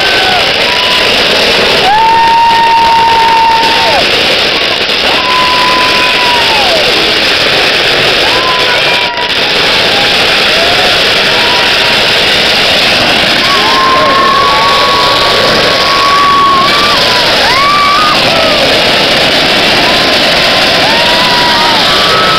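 Long strings of firecrackers going off in a dense, continuous crackle, loud throughout. Every few seconds a long, high held tone rises and falls over the crackle.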